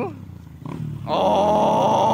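Motorcycle engines passing, then from about a second in a man's long, loud, drawn-out shout held on one pitch.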